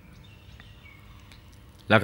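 A pause in a man's talk, with faint background noise and a few faint high chirps; the talk resumes just before the end.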